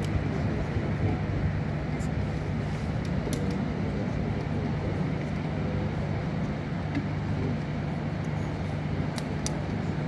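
Steady outdoor background noise with a low hum, and a few short sharp taps scattered through it, two of them close together near the end.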